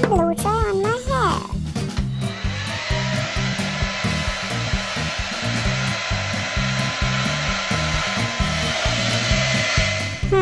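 A hair dryer blowing steadily, an even whirring hiss with a faint whine, starting about two seconds in and cutting off near the end, over bouncy children's background music. Just before it, a short hummed cartoon voice.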